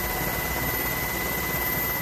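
A steady engine rumble with a thin, high whine held over it.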